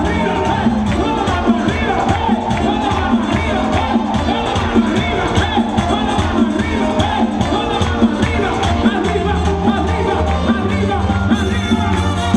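Live merengue band with horns and percussion playing a steady dance beat, with a crowd cheering and shouting over the music.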